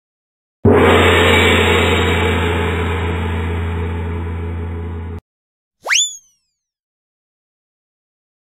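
Edited-in cartoon sound effects. A loud crash-like sound with a low hum starts suddenly about half a second in, fades slowly and cuts off after about four and a half seconds. Just before the six-second mark comes a short swoop that rises steeply in pitch and falls back, like a cartoon 'boing'.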